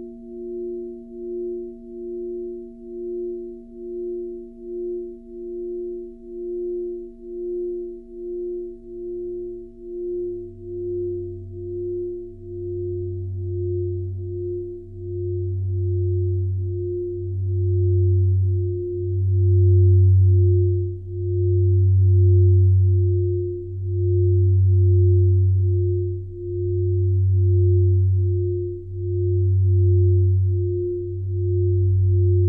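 Electronic synthesizer tones: a steady low hum with a higher tone pulsing about twice a second. About a quarter of the way in, a deep bass tone joins, swelling and fading every couple of seconds and growing louder.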